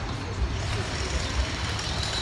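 Steady street traffic noise from motor vehicles on a busy road, with a low rumble.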